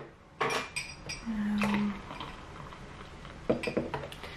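Small clicks and knocks as the plastic screw cap is twisted off a paper carton of oat drink, with light clinks of a metal spoon against a glass. A short low hum comes about a second and a half in.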